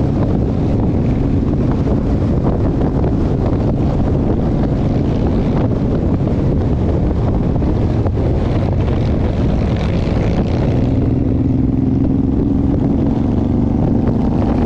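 Cruiser motorcycle engine running steadily at road speed, with wind rushing over the microphone. A steady hum in the engine note grows stronger in the last few seconds.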